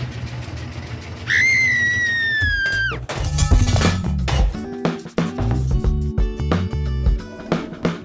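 A washing machine running with a low rumble, and a long high-pitched squeal about a second in that sags slightly in pitch before cutting off. From about three seconds, upbeat music with drums takes over.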